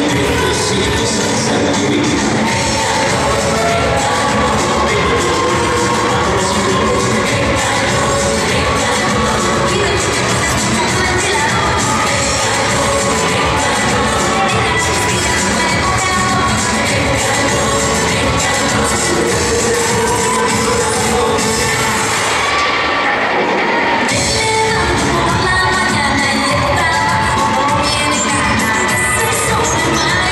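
Latin dance music played loud over a hall's sound system, with a crowd cheering and shouting for the dancers. The music briefly thins out about three-quarters of the way through, then carries on.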